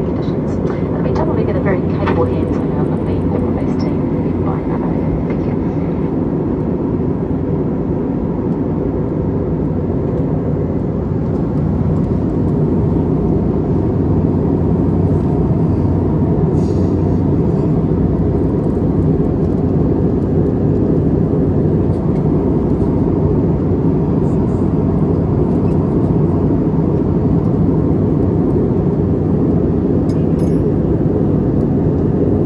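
Steady cabin noise of an Airbus A321neo in the climb, heard from a window seat: engine and airflow noise with a low hum, growing slightly louder about halfway through.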